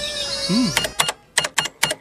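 A held tone fades out in the first part. Then comes a quick, irregular run of about seven sharp clicks with near silence between them.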